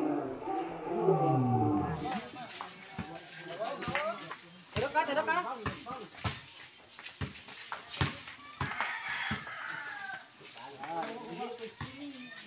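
Voices of players and spectators shouting and calling out during a pickup basketball game, over repeated sharp thuds of a basketball bouncing on a concrete court.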